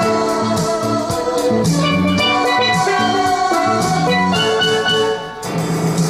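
Steel pan (steel drum) playing a song melody as a continuous run of ringing pitched notes, with a brief dip in loudness near the end.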